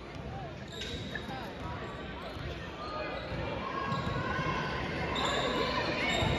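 Basketball being dribbled on a hardwood gym floor, with voices in the echoing gym.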